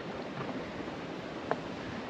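Steady shoreline ambience of sea water washing and wind, with a single light click about one and a half seconds in.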